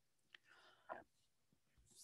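Near silence: room tone, with a faint click about a third of a second in and a soft breathy sound just before the middle.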